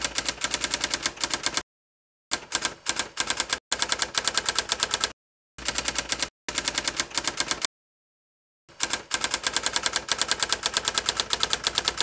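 Typewriter sound effect: rapid key clicks, about seven a second, in runs broken by three short silences.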